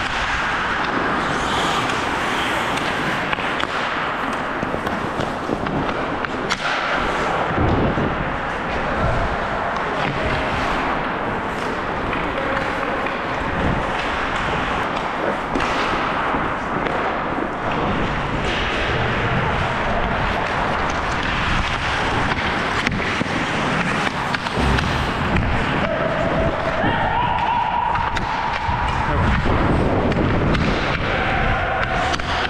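Ice hockey skates scraping and carving on the ice during play, heard from the skater's own helmet, with scattered knocks of sticks and puck and a continuous rush of noise.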